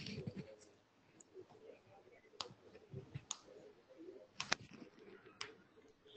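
A handful of faint, sharp clicks at irregular intervals over a quiet background, two of them in quick succession about four and a half seconds in.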